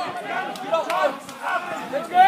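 Several spectators' voices talking and calling out at once, overlapping chatter without clear words.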